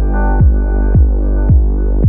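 Electronic bass music: deep kick-bass hits with a falling pitch about twice a second over a sustained low bass note and synth chords, with no hi-hats or cymbals.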